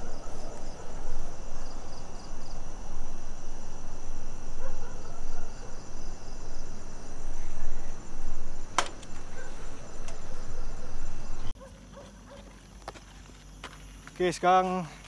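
Night insects keep up a faint, steady high chirring, under loud rustling and footstep noise from the camera being carried. There is one sharp click about nine seconds in. Near the end the noise drops away suddenly, leaving only the insects.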